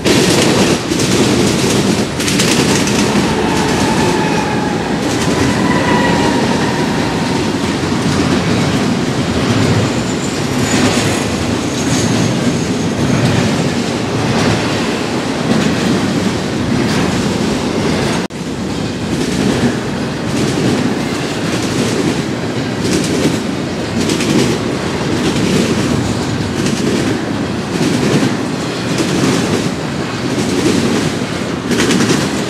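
Norfolk Southern double-stack intermodal freight train passing close by: a loud, steady rumble of steel wheels on rail with a rhythmic clickety-clack of wheels over rail joints. Faint high wheel squeals come and go in the first dozen seconds.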